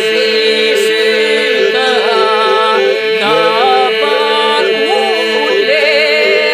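Albanian Lab iso-polyphonic folk singing. A group holds a steady drone (the iso) while solo voices weave ornamented, bending melodic lines above it.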